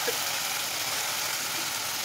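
Masala-coated small fish sizzling steadily in hot mustard oil in a kadhai as they are tipped in.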